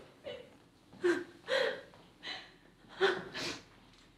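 A woman gasping and sobbing with emotion: about five short, breathy voiced cries spread over a few seconds.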